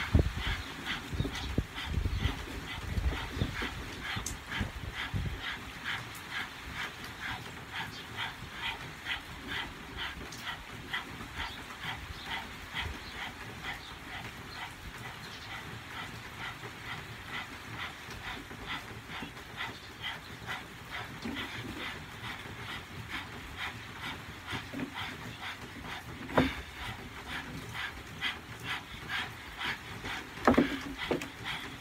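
Several people panting rapidly in unison through outstretched tongues, like a dog, in a fast, even rhythm: a Kundalini yoga breath driven from the diaphragm. A few low thumps sound in the first seconds, and a single sharp click comes near the end.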